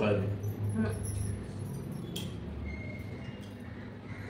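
Faint clinking of bangles on hands that are eating, over a low steady hum, after a word of speech at the start.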